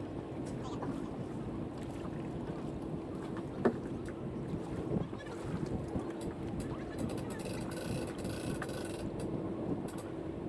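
A boat engine idling with a steady low hum, faint indistinct voices around it, and one sharp knock about three and a half seconds in.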